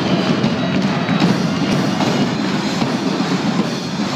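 Live band playing loud amplified music with drums and percussion, a dense, continuous sound without breaks.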